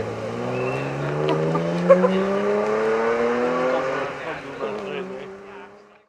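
Rally car engine accelerating away, its pitch rising steadily for about four seconds, then dropping with a gear change and fading as the car moves off. A single sharp crack about two seconds in.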